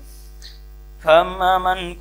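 A steady low electrical mains hum fills a pause in the reading. About a second in, a man's voice resumes reciting Arabic hadith text in a drawn-out, chant-like delivery over the hum.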